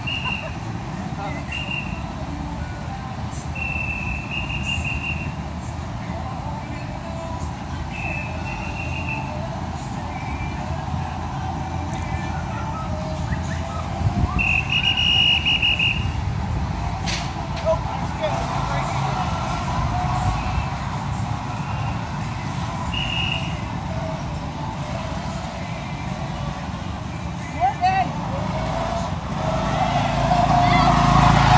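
Go-kart engines running on the track, a steady drone. Near the end one kart approaches and grows louder, its engine note rising.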